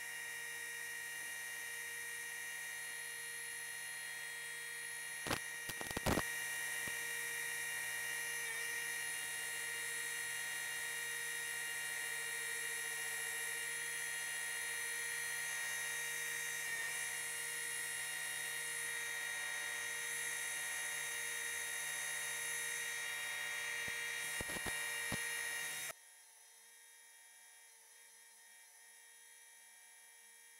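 Industrial lockstitch sewing machine running steadily with a high whine while stitching tulle, with a few clicks about five seconds in and again near the end. The whine cuts off suddenly shortly before the end, leaving a faint hum.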